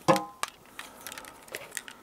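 Light, irregular clicks and taps of a tangled electrical cable, with its plastic inline controller and plug, being pulled apart by hand. A short grunt sounds just at the start.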